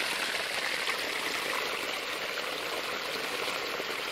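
A stream feeding the lake, its water running in a steady, even rush.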